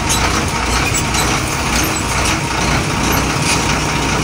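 Double-decker bus diesel engine idling, a steady low rumble heard from the driver's cab.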